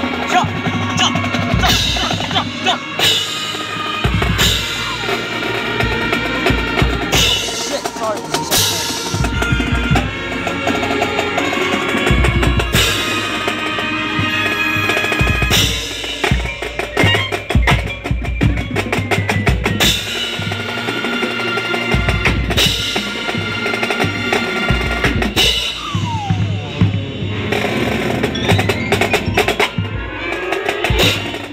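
Marching band playing: sustained horn chords over a drumline with snare and bass drums, the drum strokes sharp and frequent throughout.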